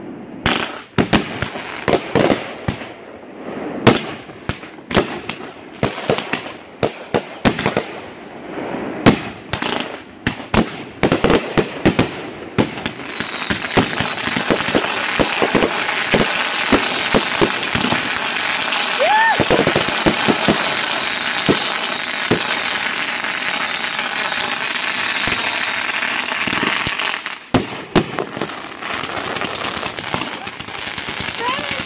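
Fireworks going off overhead: a rapid, irregular series of sharp bangs from shell bursts for about the first twelve seconds, then a dense, continuous crackling for about fifteen seconds, with a few more bangs near the end.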